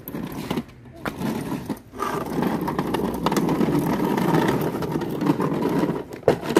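The hard plastic wheels of a toddler's swing car rumble steadily over rough pavement as it rolls, starting about two seconds in.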